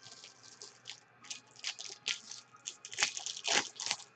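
Foil wrappers of 2018 Bowman Draft baseball card packs crinkling and tearing as packs are ripped open by hand: an irregular run of crackles, loudest about three seconds in.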